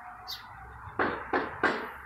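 Three sharp knocks in quick succession, about a third of a second apart, over a faint steady background hiss.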